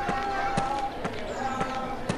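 Footsteps, about two a second, over background chatter of voices.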